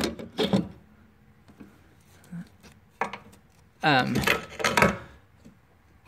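A man's hesitant speech, a drawn-out 'um', with a few light clicks and knocks, one about half a second in and one about three seconds in.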